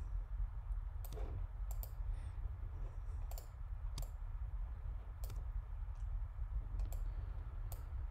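Computer mouse clicking about eight times at irregular intervals while navigating a map on screen, over a steady low hum.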